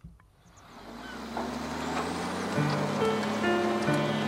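A short soft knock, then a swell of noise rising into background music with long held notes, growing louder over the first two and a half seconds.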